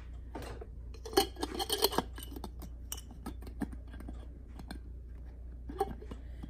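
Light clicks, taps and scrapes of a plastic pump dip tube knocking against the inside of a glass mason jar as it is measured against the jar's depth, busiest between one and two seconds in, then a few scattered ticks.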